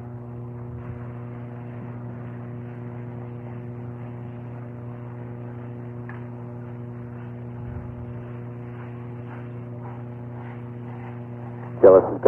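A steady low electrical hum, a mains-type buzz with even overtones, holding unchanged throughout, with a few faint brief sounds over it in the second half.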